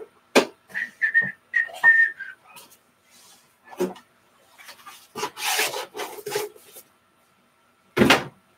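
Trading cards and a clear plastic card holder being handled. There are a few light taps and clicks, short high squeaks about one to two seconds in, and a longer sliding rub from about five to six and a half seconds in.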